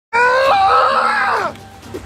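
A high-pitched voice screaming for about a second and a half. It jumps up in pitch about half a second in and falls away at the end.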